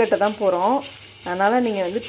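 A woman speaking, with a short pause about a second in, over the rubbing and swishing of mint leaves being washed by hand in a pot of water.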